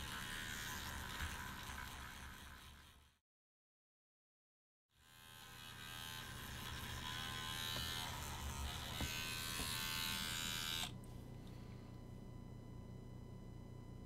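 A battery electric toothbrush buzzes steadily as it scrubs softened paint and stripper off a plastic miniature under water. The sound cuts out completely for about two seconds around three seconds in, then resumes. It stops about eleven seconds in, leaving a faint steady hum.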